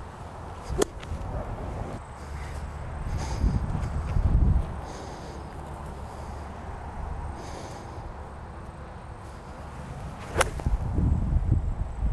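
A 54-degree golf wedge striking the ball with one sharp, clean click near the end, a pure strike. A fainter click comes about a second in. Wind rumbles on the microphone throughout.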